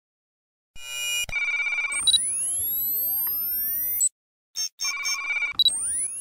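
Synthesized logo-intro sound effects: electronic beeping tones, then high rising sweeps from about two seconds in. A short break just after four seconds is followed by more beeps and another rising sweep near the end.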